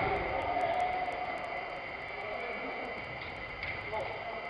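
Players' voices calling out on an indoor five-a-side football pitch, one drawn-out call fading over the first second or so, over a steady high-pitched hum in a large hall; a faint knock near the end.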